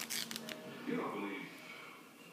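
Duct tape ripping and crackling as it is handled, a short burst lasting about half a second at the start, followed by a voice in the background.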